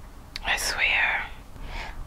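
A woman whispering a short breathy phrase under her breath about half a second in, just after a small mouth click.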